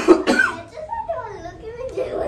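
A single cough right at the start, then indistinct talking.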